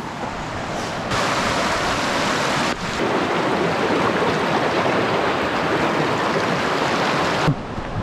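Fast-flowing river rushing over rocks: a loud, steady wash of water. It jumps louder about a second in and cuts off abruptly just before the end.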